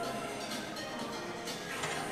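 Faint music with a few weak steady tones, under a low, even background noise.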